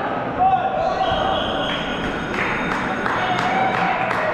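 Dodgeballs hitting players and bouncing on the court floor in a large, echoing hall, with a run of sharp hits in the second half, over players' shouting voices.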